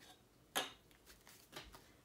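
Paper banknotes being handled and separated on a tabletop: one sharp rustle about half a second in, then a few fainter rustles.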